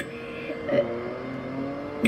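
Small electric blackhead-remover pore vacuum running, a steady motor hum whose pitch shifts slightly about half a second in.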